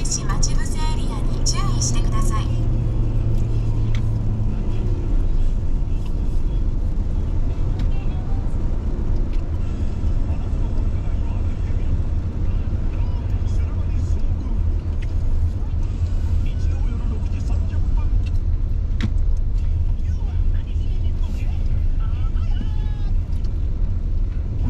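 Steady low rumble of a car's engine and tyres heard inside the cabin while driving on a rain-wet expressway.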